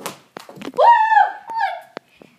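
A sharp knock from the knee hockey game, a few light taps, then a high-pitched child's yell about a second in that rises, holds and drops, followed by a shorter cry.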